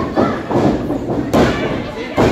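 Several heavy thuds on a wrestling ring's canvas mat, the sharpest about a second and a half in, over crowd voices.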